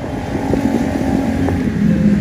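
A motor vehicle engine running close by: a loud low rumbling hum that settles slightly lower in pitch near the end.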